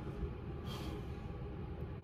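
A pause between speech: quiet room tone, with a faint breath drawn in about a third of the way through.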